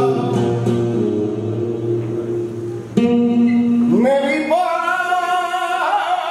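Male flamenco singer singing a taranta to acoustic guitar, holding long ornamented notes. Just before three seconds the line breaks off and a louder phrase starts, sliding up about a second later to a high held note.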